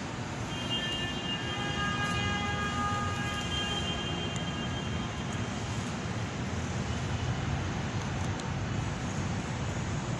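Steady low droning background noise in a large, reverberant church interior, with a faint high whine of several steady tones over the first half.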